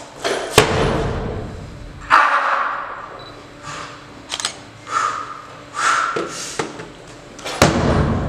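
Clean and jerk with a loaded barbell on a wooden lifting platform: a sharp, heavy thud just after the start as the bar is caught and the feet hit the boards, short noisy bursts in between, and another sharp thud near the end as the bar is driven overhead.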